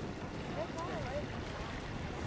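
Steady wind buffeting the microphone, with faint distant voices briefly heard about half a second in.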